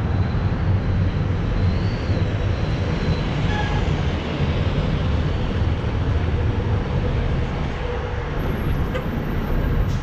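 Steady rushing rumble of wind and road noise on a bicycle-mounted action camera while riding, mixed with city traffic as a coach bus passes close alongside.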